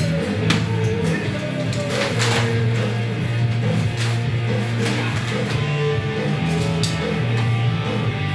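Rock music with electric guitar and drums playing steadily.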